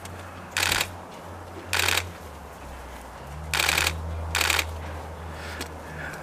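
A young lion pawing at a fir branch on snow: four short crunchy rustles, about a second apart, over a steady low hum.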